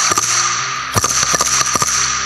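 Wooden clacker (crotalus), a board with a hammer on it, shaken in rapid irregular bursts of sharp wooden clacks that echo through the church. It is a stark noise that replaces the sanctuary bells at the consecration on Holy Thursday.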